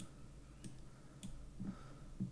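Faint single computer-mouse clicks, three of them about half a second apart, as chess moves are made on screen.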